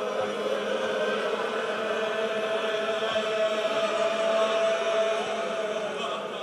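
Wordless chanting in a Persian Shia mourning recitation, with the voice holding one long steady note for several seconds between sung verses.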